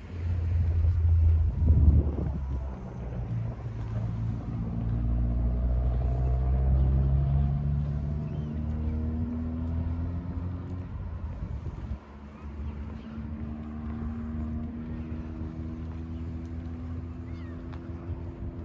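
Wind buffeting the microphone for the first few seconds, then the drone of an engine rising slowly in pitch, twice over.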